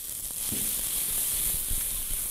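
Chopped onion, red pepper and garlic sizzling in oil in a saucepan as they are stirred, a steady frying hiss.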